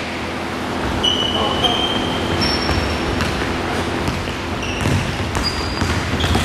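Basketball sneakers squeaking on a polished wooden gym floor: several short, high-pitched squeaks scattered throughout, each lasting under a second. A basketball bounces underneath, with the echo of a large hall.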